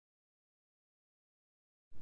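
Dead silence: the soundtrack is empty until a narrator's voice starts at the very end.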